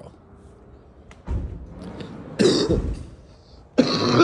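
A man coughing and clearing his throat: two short, rough bursts about a second apart.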